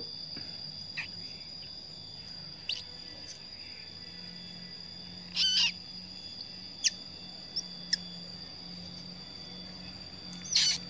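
Brief high bird squeaks and chirps, a second or more apart, with a short wavering call about halfway through as the loudest, over a steady high insect whine.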